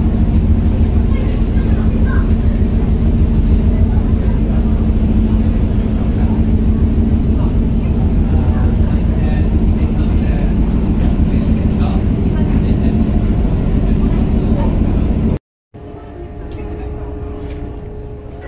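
Passenger ferry's engine running with a steady low rumble and drone, heard from on board, with faint voices under it. About three seconds before the end it cuts off abruptly, and a quieter, higher-pitched engine hum follows.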